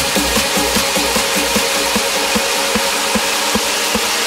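Electronic bounce dance music in a breakdown: the heavy kick drum drops out right at the start, leaving a dense noisy synth wash over quick repeating pitched hits.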